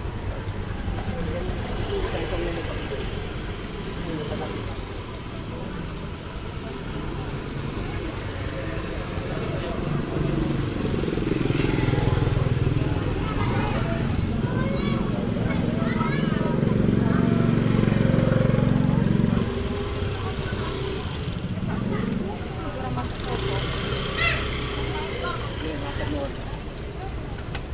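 Busy market-street ambience: scattered voices of people and small motorbike engines. A motorbike engine running close by is loudest through the middle, for about eight seconds, then drops away; a short voice stands out near the end.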